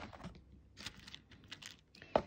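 A few faint plastic clicks and taps as a clear plastic false-nail-tip box is handled and opened.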